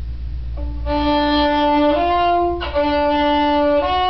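Violin played slowly in long bowed notes, each held about a second, beginning about half a second in and moving back and forth between two pitches. It is a student's slow arpeggio practice, plausibly the first inversion of B major.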